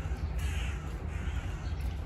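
A bird calling twice in quick succession, each call about half a second long, over a steady low rumble.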